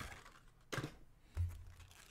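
Light clicks and taps of cards and packs being handled on a desk, with a soft low thump about one and a half seconds in.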